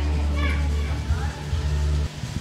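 Background music with a steady, deep bass, faint voices under it, cutting off abruptly at the end.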